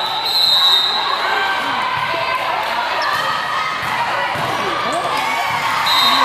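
Referee's whistle, a short steady high blast about a quarter second in and again just before the end, over the din of a busy indoor volleyball hall: many voices, with balls being struck and bouncing on the courts.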